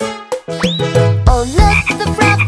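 Cartoon frog croaking sound effect, with a quick rising whistle-like glide about half a second in, as children's song music starts up a little past the middle.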